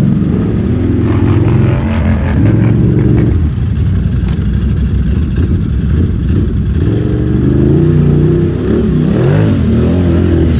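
ATV engines running at low speed, the nearest one idling with its revs rising and falling as the throttle is worked, most noticeably near the end.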